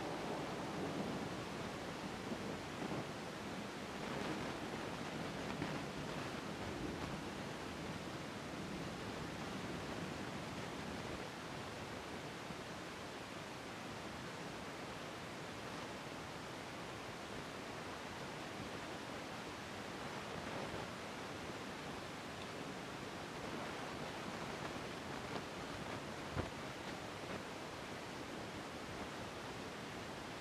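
Steady rain falling on a wet street, with a low rumble of distant thunder swelling and fading over the first ten seconds or so. A single sharp click about 26 seconds in.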